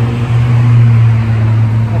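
A motor vehicle's engine running steadily with a low drone, a little louder around the middle.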